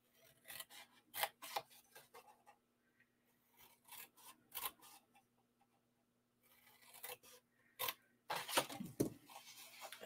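Small craft scissors snipping through black cardstock in three bursts of short, quiet cuts. The cuts trim out a score line on either side of the fold.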